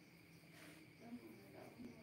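Near silence, with a faint steady high chirring of night insects.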